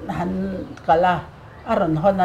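A woman's voice speaking, with drawn-out, level vowels.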